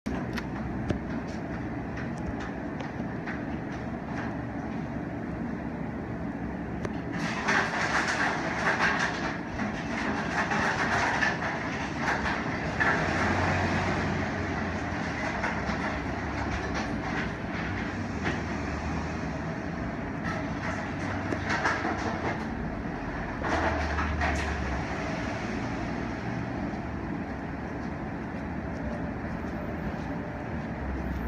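A single click as the elevator hall call button is pressed, then steady rumbling background noise with two louder swells, the first lasting several seconds from about seven seconds in, the second shorter, near twenty-one seconds.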